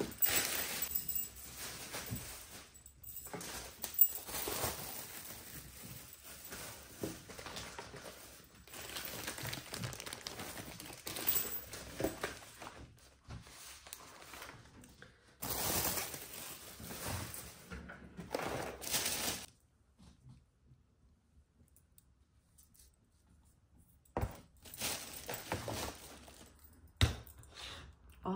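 Thin plastic grocery bags rustling and crinkling as items are lifted out of them and set on a table, with a few light knocks of packages being put down. The rustling stops about three quarters of the way through, and a few more rustles come near the end.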